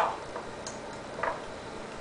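A few faint light clicks as a raw oyster's shell halves are handled and set on a plastic cutting board.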